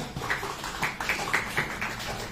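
Light hand-clapping from a few people, short claps about four a second.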